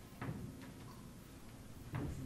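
A few faint, sharp clicks, unevenly spaced, over a low room hum.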